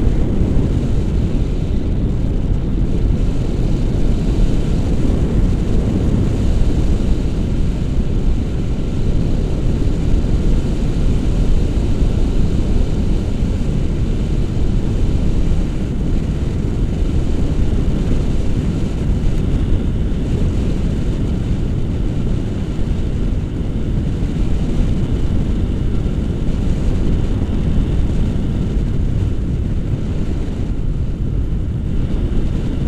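Steady low rumble of wind noise on an action camera's microphone, from the airflow of a paraglider in flight.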